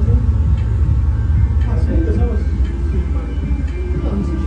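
Indistinct voices of people talking, over a loud, steady low rumble.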